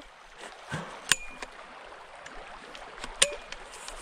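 Low, steady rush of a flowing creek, with two sharp clicks about a second in and near the end.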